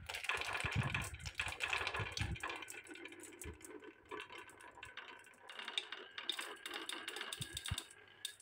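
Many glass marbles rolling and clicking against each other on wooden marble-run tracks: a dense clatter with a low rolling rumble for the first couple of seconds, thinning to scattered clicks after that.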